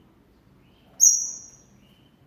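Double-collared seedeater (coleiro) singing: one loud high note with a sharp start about a second in that fades over about half a second, among faint short chirps lower in pitch.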